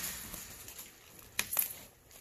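Faint hiss from a flameless ration heater bag steaming with its meal pouch inside. About a second and a half in come a sharp click and a few lighter crinkling clicks as a hand handles the plastic bag.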